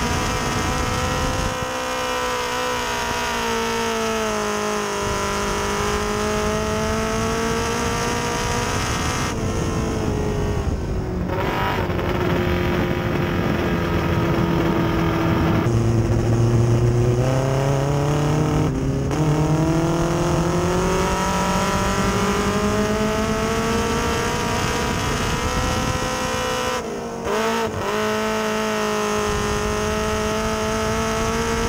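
Modified mini stock dirt race car's engine heard from inside the car, running hard. Its pitch sinks as the driver eases off and climbs again as he gets back on the throttle, several times over, with a short lift and drop in level near the end.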